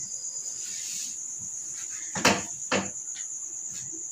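Steady high-pitched chirring of insects. Two sharp clicks a little past the middle are the loudest sounds.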